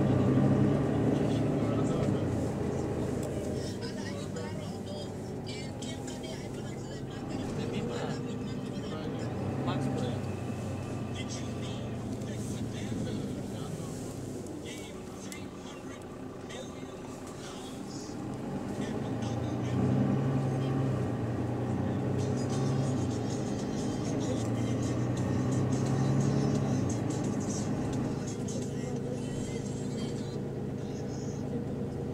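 Interior ride noise of a Mercedes-Benz Citaro bus: the engine and drivetrain run under the floor, their note rising and falling several times as the bus pulls away and slows, over steady road noise, with passengers talking.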